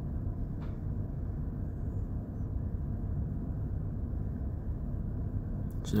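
Steady low rumble of background machinery, with a faint click about half a second in.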